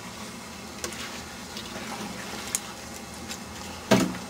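Tomatoes cooking in a large aluminium stockpot over a propane burner: a steady hiss, with the soft sounds of a wooden paddle stirring through them, a few faint ticks, and one sharp knock near the end.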